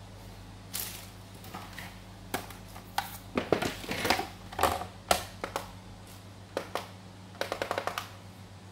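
Handling knocks and clatter as a cardboard box and a plastic digital kitchen scale are picked up and set down on a glass tabletop. A quick run of small clicks near the end comes as the scale's buttons are pressed to switch it on.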